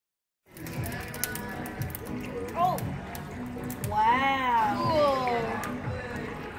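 Busy restaurant background: people talking, background music and frequent light clinks of glassware and dishes, starting about half a second in. About four seconds in, a voice holds a long note that rises and falls.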